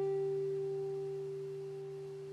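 A guitar's high E string, fretted at the third fret (a G), rings on after being plucked and fades slowly.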